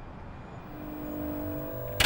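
Low rumbling ambience with a faint steady held tone that comes in about two-thirds of a second in and slowly grows louder: the closing audio of a music video.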